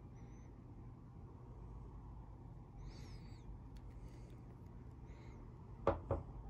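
Quiet room tone with a low steady hum, a few faint high squeaks about three and five seconds in, and a short click just before the end.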